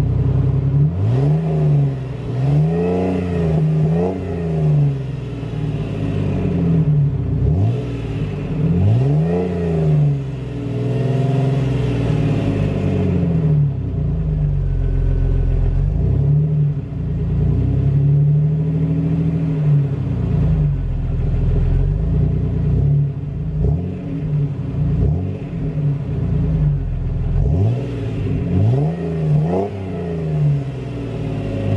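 2001 Jeep Wrangler TJ's 4.0-litre inline-six engine revved again and again from idle, each rev climbing and dropping back, some short blips and some held for a couple of seconds.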